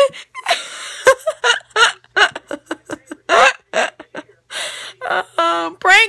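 A girl laughing in short, breathy bursts, with gasping breaths in between.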